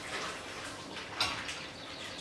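A small metal saucepan is set down on a gas hob with one short clink, over a steady hiss of pans heating on the stove.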